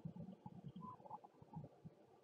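Near silence with faint, irregular low rumbling background noise.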